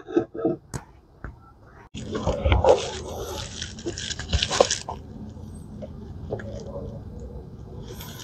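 Locking pliers and steel parts clicking and clattering on a workbench as small steel gussets are clamped in place on a steel plate for welding. There are a few sharp clicks at first, then about two seconds in a busier stretch of clatter and rustling handling noise that quiets after a few seconds.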